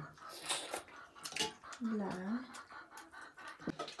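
Metal spoons clicking and scraping against steel plates as people eat, a few separate sharp clicks, with a brief voice about halfway through.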